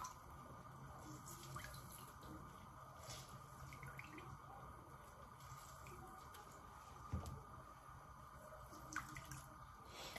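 Very faint drips and small clicks of lime juice being squeezed by hand into a pot of milk, the juice that will curdle it, over a low steady hum; a soft knock about seven seconds in.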